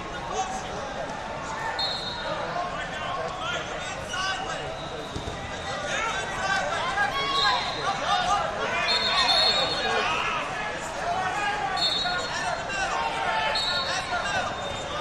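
Wrestling tournament hall: many voices of coaches and spectators calling out over each other in a large, echoing room, with several short, high steady tones cutting through.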